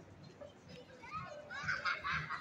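High-pitched voices calling out or squealing, starting about a second in and getting louder toward the end.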